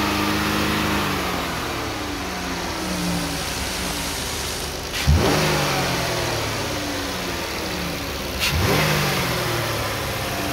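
Dodge Grand Caravan's 3.6-litre V6 running, revved sharply twice, about five seconds in and near the end, each time dropping back toward idle.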